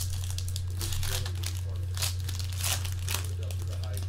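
Plastic shrink wrap being pulled off a trading card box and crumpled in the hands: a run of sharp, irregular crinkles and tearing. A steady low hum runs underneath.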